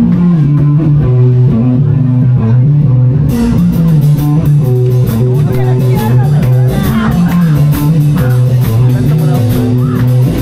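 Live rock band starting a song: a low bass guitar riff plays alone at first, then the drum kit with cymbals and the electric guitar come in about three seconds in, and the full band plays on.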